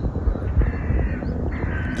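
A bird calling over a low, steady rumble of outdoor ambience.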